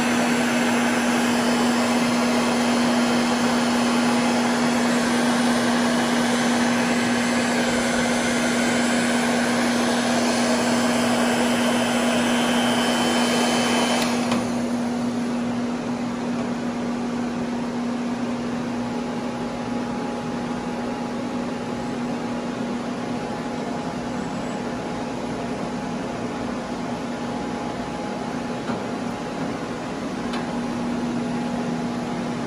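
Chicago Electric electric heat gun running: a steady blowing rush from its fan with a constant motor hum. About halfway through the rushing sound drops noticeably in level while the hum carries on.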